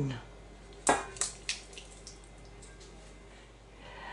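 Tomato wedges tipped from a metal bowl into a pot of broth and vegetables: a wet plop about a second in, another just after, then a few softer splashes and drips.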